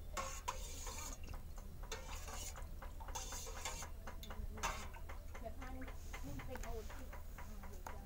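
Metal spoon stirring liquid in a stainless steel pot, with a run of light, irregular clicks where it knocks against the pot's sides.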